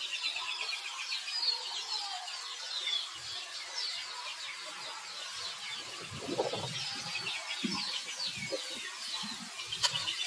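Baby macaque crying in a string of short, high-pitched squealing cries, repeated throughout, the distress of a baby turned away from nursing by its mother. A few low rustling thumps come in the middle.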